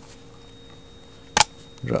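A single sharp click about one and a half seconds in, as a pin is dropped into place in a Remington 597 rifle's trigger group; otherwise quiet room tone with a faint steady hum.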